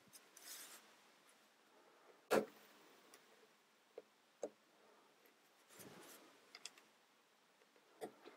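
Plastic toy building-set pieces being handled and snapped together: one sharp click about two seconds in, then a few fainter clicks and soft rustling of plastic.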